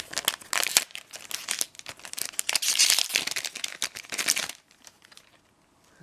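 Trading-card booster pack wrapper crinkling and tearing as it is opened by hand, a dense crackle that stops about a second and a half before the end.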